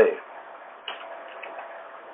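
The last of a spoken word, then a pause filled with faint, steady hiss from a conference-phone line, with a soft tick about a second in.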